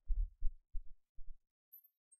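Low, muffled thumps, five in quick succession in the first second and a half, then quiet.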